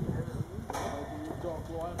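People talking in the background, their voices starting up about two thirds of a second in, over a low rumble of wind on the microphone.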